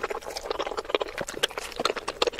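Close-miked wet chewing and mouth clicks of someone eating soft steamed momos, sped up to three times normal speed so the smacks and clicks come thick and fast.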